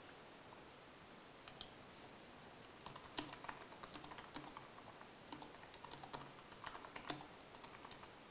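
Faint typing on a computer keyboard: a couple of keystrokes about a second and a half in, then a run of quick key clicks from about three seconds to about seven seconds.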